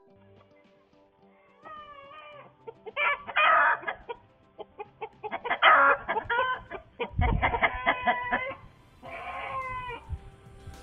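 A chicken giving loud, harsh, repeated distress squawks, the sound of a bird under attack by a hawk inside the coop. It is picked up by an outdoor security camera's microphone, so it sounds thin and narrow. A dull thump comes about seven seconds in.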